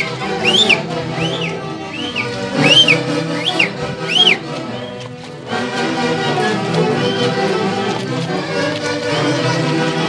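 Andean orquesta típica playing a huaylarsh dance tune. Through the first half, short high-pitched calls that rise and fall come about every 0.7 seconds over the music, then stop.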